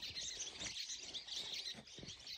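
Small birds chirping faintly in the background: a scatter of short, high chirps.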